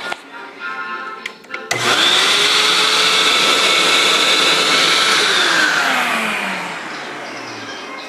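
Upright vacuum cleaner switched on a little under two seconds in: its motor spins up with a rising whine and runs loudly and steadily for a few seconds, then winds down with a falling whine as it is switched off.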